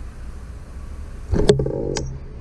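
Low rumble of wind and road noise on a bicycle-mounted camera while riding. About one and a half seconds in it turns louder, with a steady hum and a few sharp clicks.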